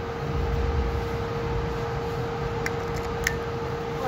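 Stretcher rolling along a street: a low rumble, strongest in the first half, over a steady hum, with two short clicks near the end.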